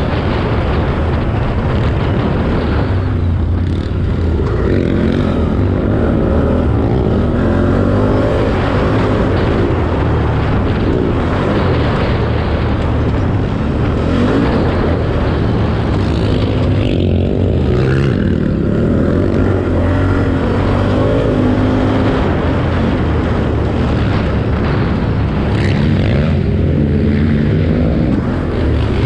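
4x4 ATV engine running hard while being raced over a dirt track. Its pitch rises and falls continuously as the throttle is worked.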